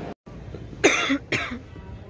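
A woman coughs twice, about half a second apart.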